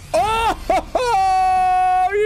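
A man's excited, high-pitched vocal cry at pulling a rare foil card: a couple of short rising yelps, then a long held "ooooh" that bends downward at the end.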